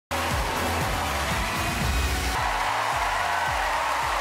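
Television talent-show theme music playing over the opening logo, with a steady pounding drum beat; the arrangement changes about halfway through.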